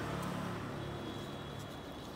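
Steady low background hum, with a thin high-pitched whine that comes in about midway.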